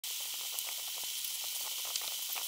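A steady high-pitched hiss, with a few faint ticks.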